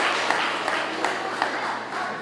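Audience applause dying away, thinning to scattered individual claps.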